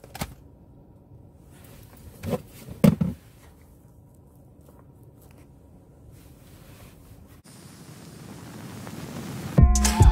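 A few sharp knocks and rustles of handling, one right at the start and a pair about two to three seconds in, over a low steady car-cabin background. A hiss swells over the last couple of seconds, then loud music with a beat cuts in just before the end.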